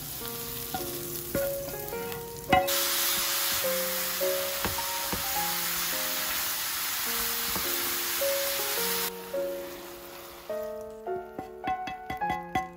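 Mushrooms and sliced beef sizzling as they stir-fry in an oiled frying pan, stirred with a wooden spatula; the sizzle comes up loud about two and a half seconds in and stops abruptly about nine seconds in. Gentle background music plays throughout.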